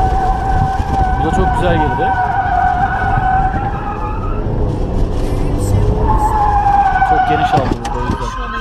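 Car tyres squealing in two long screeches, the first from the start to about four seconds in and the second near the end, over the car's running rumble.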